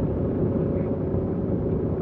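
A yacht under way at sea: a steady low rumble with a faint even hum, and water rushing along the hull.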